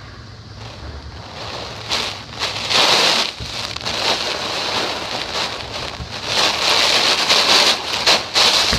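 Typhoon wind and heavy wind-driven rain, coming in surges: quieter at first, then loud gusts that swell and fade from about two seconds in.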